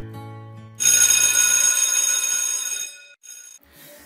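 Notification bell sound effect for the subscribe-bell animation: a bright chime rings out suddenly about a second in and fades away over about two seconds, after a faint low tone.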